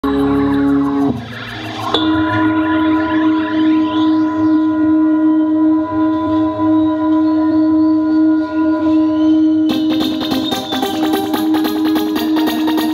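Live psytrance electronic music: a steady held drone note with rising swept sounds over it. About ten seconds in, a fast, busy beat comes in.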